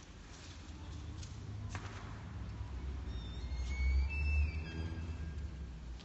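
A low drone swelling in level to a peak about four seconds in, with several short high gliding whistle-like tones over it in the middle, the sound of a participatory sound performance in a large room. A single sharp click comes a little under two seconds in.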